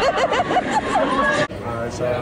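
Several people's voices, excited and overlapping, cut off abruptly about one and a half seconds in, followed by a quieter voice.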